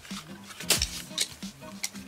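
A few sharp clicks of wooden pencils knocking together as a set of Derwent fine art pencils is tipped out of its cardboard box and gathered in the hand, over quiet background music.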